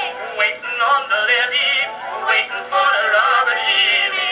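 Edison Blue Amberol cylinder record playing a song: male singing with band accompaniment. The sound is thin and narrow, with little deep bass or high treble, as on an early acoustic recording.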